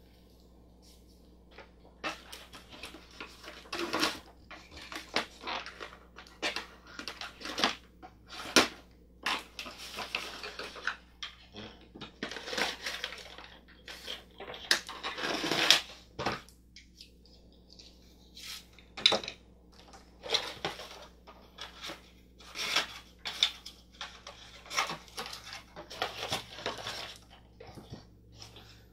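Hard plastic Play-Doh tools being pulled out of a cardboard box insert and set down: irregular clicks, clacks and rustling of plastic and packaging, starting about two seconds in.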